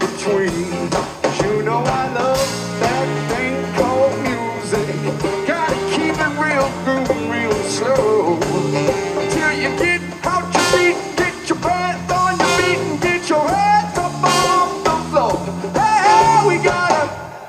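Live band playing an upbeat ska/rock number: drum kit, electric bass and guitar, with a bending lead melody over the beat.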